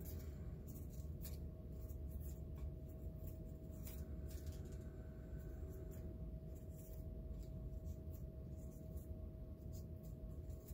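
Faint, scattered crinkles and light ticks of paper strips being bent and creased by hand, over a steady low room hum with a faint held tone.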